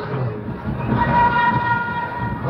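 Held musical notes from the drama's accompaniment played over the loudspeakers: a steady sustained tone with several overtones, brightest in the middle, between lines of chanted dialogue.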